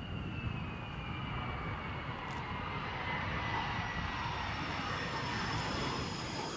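F-35 fighter jet's engine heard on landing: a steady jet rush with a high whine that slowly falls in pitch.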